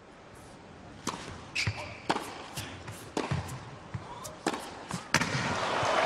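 Sharp knocks of a tennis ball: racket strikes and bounces on a hard court, about a dozen, spaced irregularly around half a second apart.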